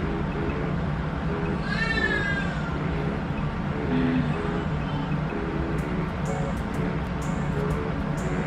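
Background lounge music with steady short notes, and a brief high, wavering whimper from a fussing baby about two seconds in.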